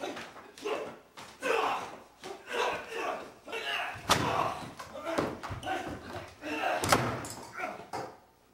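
A stuntman is thrown down onto a wooden table. There is a sharp slam about four seconds in and a louder one near seven seconds, with voices around them.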